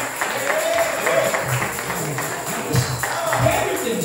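Worship music with a tambourine keeping a quick steady rhythm and voices over it.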